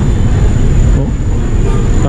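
Loud, steady low rumble of motor traffic from the street.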